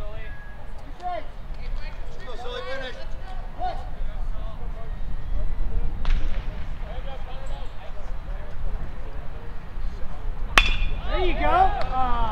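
A metal baseball bat hitting the ball about ten and a half seconds in, one sharp ping with a short ring, followed at once by shouting from players and spectators. Before it, distant calls and chatter over wind rumble on the microphone.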